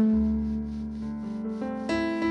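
Live jazz combo playing an instrumental passage: a saxophone holds one long, breathy low note, then moves up to a louder, higher note near the end, over keyboard, upright bass and drums.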